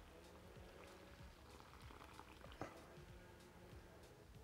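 Faint sound of water poured in a thin stream from a glass jug into a glass bowl of chickpea flour, with a light click about two and a half seconds in.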